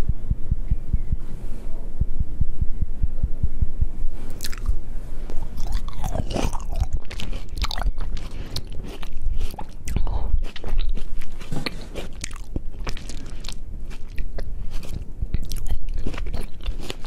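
Green grapes bitten and chewed close up to a pair of microphones: low thumping at first, then a run of sharp crunching clicks from about four seconds in.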